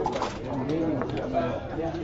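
Backgammon checkers clicking lightly against the board and each other as they are moved, a few short clicks, under a murmur of background voices.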